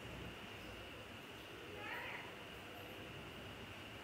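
A single brief, high-pitched, voice-like call about two seconds in, over a faint steady hiss.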